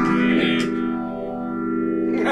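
Electric guitar played through an amplifier: a chord is picked about half a second in and its notes are left ringing and sustaining.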